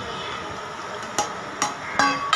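Two sharp knocks about a second in, close together, as a bowl strikes the rim of a steel mixer-grinder jar while sliced tomatoes are tipped into it.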